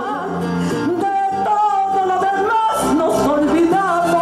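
A woman singing in a lyric, operatic style through a microphone, holding long high notes with wide vibrato over an accompaniment.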